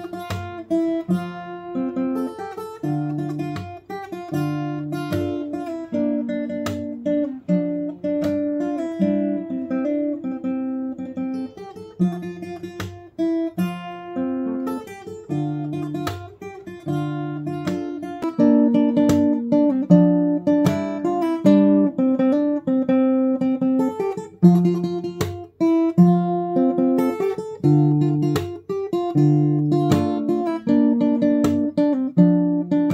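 Steel-string acoustic guitar played fingerstyle with a capo: a picked melody over alternating bass notes, played solo. It grows louder a little past halfway.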